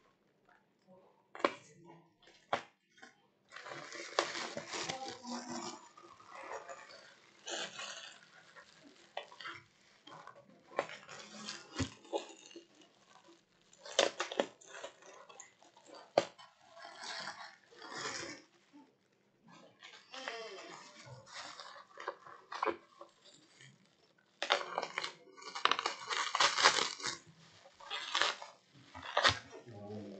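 A plastic courier bag being cut open and pulled off a bubble-wrapped parcel: irregular crinkling and rustling of thin plastic and bubble wrap, with sharp clicks, coming in spells with short pauses.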